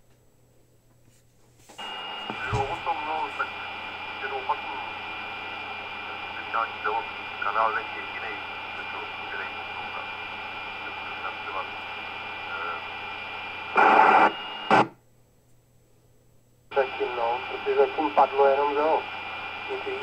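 K-PO DX 5000 CB radio receiving FM transmissions on its speaker: a distant, distorted voice under steady hiss and a fixed whistle. The signal opens about two seconds in and ends with a loud burst of noise around fourteen seconds. After a brief silence a second transmission comes in.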